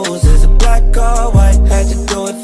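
Trap beat from a hip hop mix: long deep bass notes with ticking hi-hats and a melodic line over them. The bass drops out at the start, comes back about a quarter second in, and moves to a new note past halfway.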